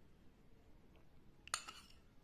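A metal spoon clinks once against a ceramic bowl about a second and a half in, with a brief ring; otherwise only faint room quiet.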